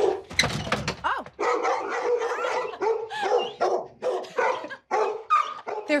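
Pet dogs barking repeatedly in a string of short calls, some rising and falling in pitch, at a visitor arriving at the front door.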